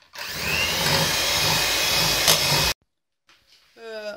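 Electric hand mixer running, its beaters whisking egg yolks, sugar and flour in a stainless steel pot; it starts up just after the beginning, runs steadily, and cuts off suddenly a little under three seconds in.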